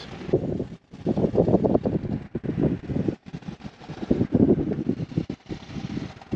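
Heavily rusted 13 mm galvanised anchor chain running out over a Lewmar windlass gypsy, rattling and clanking in quick clusters with a few short pauses. The chain is so corroded that it sheds rust flakes as it runs through the windlass.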